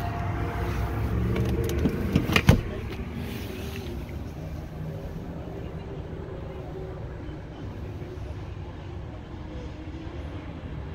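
Handling noise over a low steady rumble inside a car's cabin, with a few clicks near two seconds in and one sharp knock about half a second later.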